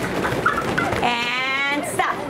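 A play parachute being shaken by a group of children, a steady fabric rustle and flutter. About halfway through, a child lets out one long, wavering vocal sound.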